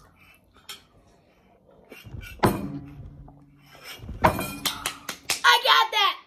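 Cereal milk slurped straight from a bowl in hurried bursts, with dishes knocking, then a child's excited shout near the end.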